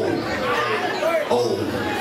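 Live hip hop played loudly through a club sound system, with a voice over a pulsing bass beat and crowd chatter in a large room.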